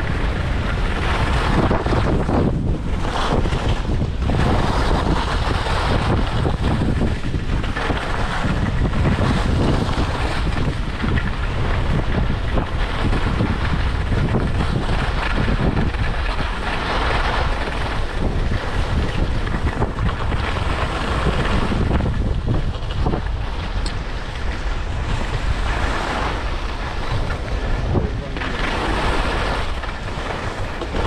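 Wind buffeting the microphone at skiing speed, mixed with the hiss and scrape of skis running over groomed snow. The noise swells and eases every few seconds as the skier turns.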